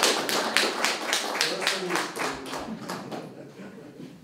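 Applause from a small audience, dense at first and thinning out to a few last claps about three seconds in, with faint voices underneath.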